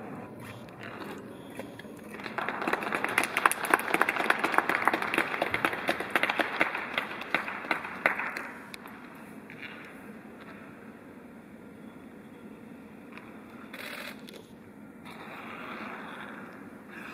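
Arena audience applauding a skater as she takes the ice: dense clapping that starts about two seconds in, lasts about six seconds, then dies away to quiet ice-rink background noise.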